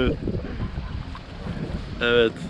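Wind noise on the microphone, a steady low rumble, aboard a small boat on the open sea.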